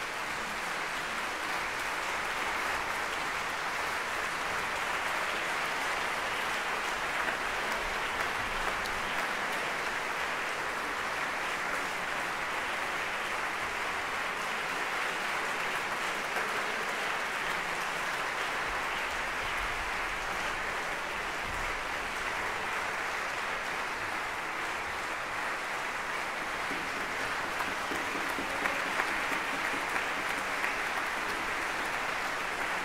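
Audience applauding steadily, a dense even clapping.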